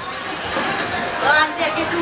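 Street traffic: a heavy road vehicle passing, a steady rushing noise, with a faint voice under it about a second and a half in.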